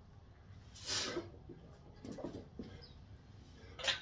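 A lifter's forceful breathing during back squat reps with a 205 lb barbell: a sharp exhale about a second in, then fainter breaths and a short burst of breath near the end.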